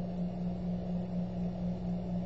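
Steady low hum with an even background hiss, no other event.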